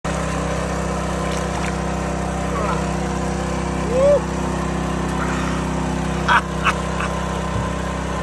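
A small engine running steadily, with a few short voice sounds over it: the loudest about four seconds in, and two more quick ones a little past six seconds.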